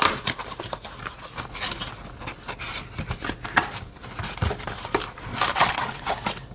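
A cardboard trading-card box being opened by hand and its foil-wrapped card packs crinkling as they are pulled out: irregular light rustles and small clicks.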